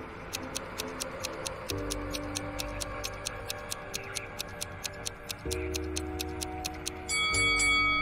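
Countdown clock-ticking sound effect at about five ticks a second over soft background music chords, marking a thinking pause. About a second before the end it stops and a ringing chime sounds.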